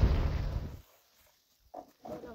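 Low rumble of a car driving on a dirt track, heard inside the cabin, cutting off abruptly under a second in, then near silence. Near the end comes one brief pitched call or cry.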